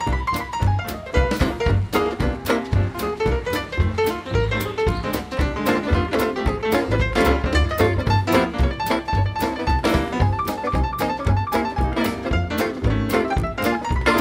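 Live jazz band playing an instrumental swing passage: banjo, upright double bass, drums and piano, driven by a steady beat.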